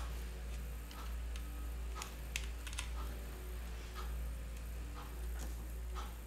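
Light, irregular clicks and ticks of wires and their connectors being handled against a plastic Tamiya WR-02 RC car chassis while the wiring is routed, over a steady low hum.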